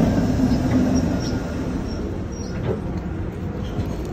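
Vintage streetcar rolling past on its rails at close range: a low rumble of wheels and running gear that eases as the car moves off, with faint high squeaks from the wheels.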